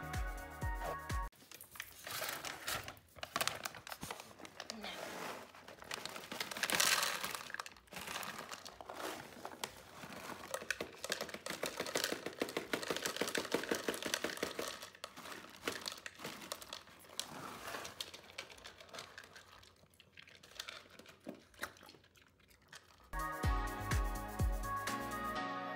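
Dry dog food poured from a crinkly bag into plastic slow-feeder bowls: the bag rustles and kibble rattles and patters into the bowls in irregular bursts. Background music plays for about the first second and comes back near the end.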